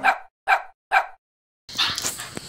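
A dog barks three times, short sharp barks about half a second apart, with dead silence between them. Near the end a steady hiss of noise begins.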